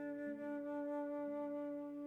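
Slow, soft instrumental meditation music: a flute holding long notes over a low accompanying note that comes back about once a second.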